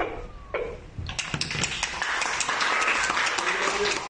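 A group of people clapping, a dense run of claps that begins about a second in and carries on to the end, with some voices under it.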